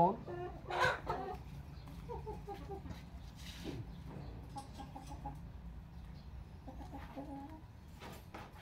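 Domestic chickens clucking softly in a few short, low calls, with one louder burst of sound about a second in.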